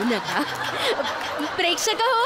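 Studio audience and judges laughing at a comedy sketch, a dense mix of laughter with short bits of voice.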